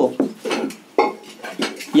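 Felt-tip marker writing on a whiteboard: a run of short scratching and squeaking strokes, the sharpest about a second in.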